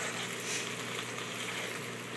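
Chicken drumsticks sizzling steadily in a pan of bubbling caramelized sauce.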